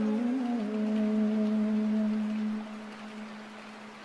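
A man's voice in melodic Qur'an recitation, drawing out one long held note at the end of a phrase. The note dips slightly in pitch about half a second in, holds steady, and then fades away over the last second or so.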